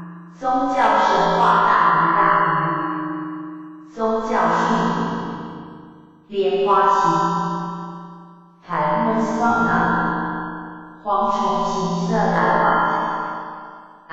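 Background music: phrases of struck, ringing notes that start sharply and fade away, a new phrase every few seconds.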